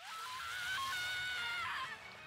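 Faint audio from the anime episode playing under the reaction: a held, high-pitched tone that slides slightly in pitch for about a second and a half, then fades out near the end.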